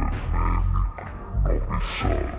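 Deep, growling animal-like roars in two loud bursts, the second starting about a second and a half in.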